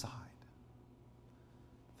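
The tail of a man's spoken word, then a pause of near silence: faint room tone with a low steady hum.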